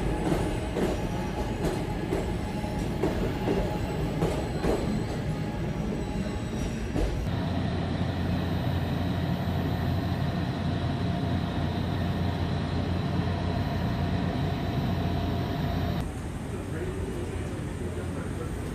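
A SEPTA electric train moving through a station, with its wheels clicking and knocking over a rumble. About seven seconds in this gives way to the steady hum of a stopped train car's equipment and ventilation, which shifts to a slightly quieter hum near the end.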